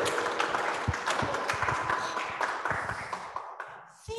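Congregation applauding in a small church hall, a patter of many hands clapping that thins out and dies away near the end.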